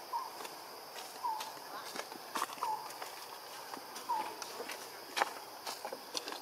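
Soft, short calls from a macaque, four brief hooked chirps about a second and a half apart, with scattered sharp clicks and taps in between.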